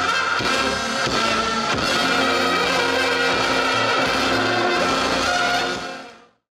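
Roma brass band playing live, with trumpets carrying the melody over tenor horns, tuba and drums. The music fades out at the very end.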